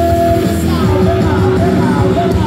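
Live rock band playing loudly: a singer's voice over electric guitars, bass guitar and drums.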